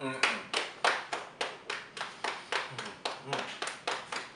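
Rapid, evenly spaced hand claps, about four a second, kept up throughout, with a few brief low closed-mouth hums between them.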